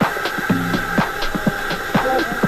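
Coffee-shop room noise: a steady high-pitched hum under background music with a soft regular beat, about two a second.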